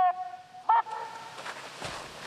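The drawn-out end of a shouted drill command to march ten steps forward, a short shout just under a second in, then a squad of cadets stepping off together, many shoes scuffing on a gravel drill ground.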